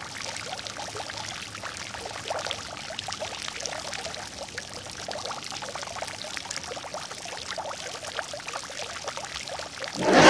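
A steady, watery pouring or trickling sound, thick with fine crackles. It holds an even level throughout.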